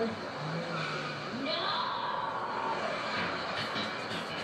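Television soundtrack of a car scene: vehicle noise with brief voice sounds, heard from the TV's speaker.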